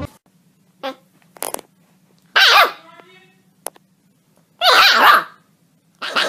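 A dog barks twice, loud and about two and a half seconds apart, with fainter short sounds and clicks before and between.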